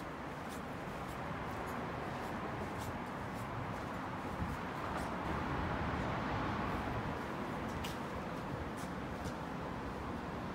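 Steady city street background noise, a hum of distant traffic that swells slightly midway, with a few faint light ticks.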